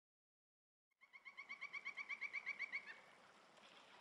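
A bird calling in a rapid run of about fifteen short, high repeated notes that grow louder and stop abruptly, followed by a faint steady rush of running water.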